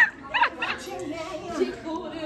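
A woman's high-pitched laughter, with short yelping squeals.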